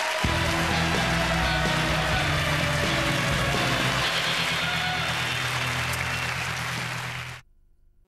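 Theatre audience applauding with play-off music that comes in just after the start; both cut off abruptly near the end.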